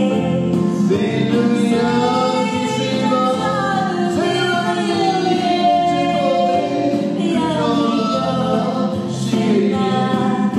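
A man and a woman singing a Christian song together as a duet into microphones, with long gliding sung notes over steady sustained backing music.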